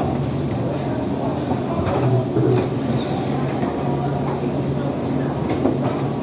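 Multivac R230 thermoforming packaging machine running, a steady low mechanical hum with scattered light clicks and clatter.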